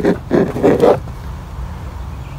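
Plastic engine-cover retaining clip scraping in its mount as needle-nose pliers twist it counterclockwise. The rough scrape lasts about half a second, then a low steady rumble carries on.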